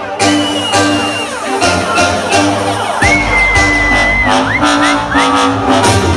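Loud live electronic music over a stage PA, heard from within the crowd: a long high held note, then about three seconds in a deep bass comes in under a second long high note, followed by short upward swoops.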